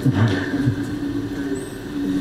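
A man's voice holding one long, steady hesitation sound, like a drawn-out 'eh', before he starts speaking.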